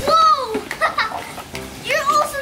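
Young children's voices: a high, drawn-out exclamation that rises and falls in pitch at the start, a few short vocal sounds in the middle, and another child starting to speak near the end.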